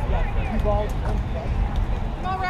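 Distant voices of players and spectators calling out around the softball field, faint and unintelligible, over a steady low rumble.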